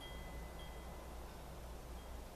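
Faint high ringing tones, chime-like, struck twice in the first second and fading, over a low steady hum.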